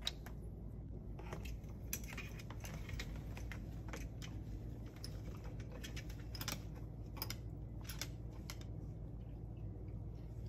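Scattered light clicks and taps, irregular and faint: a Moluccan cockatoo's claws on the wooden perch and floor among plastic toys.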